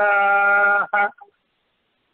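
A man chanting a verse line in a melodic recitation style, holding one long steady note for about a second, followed by a short note, then the voice stops.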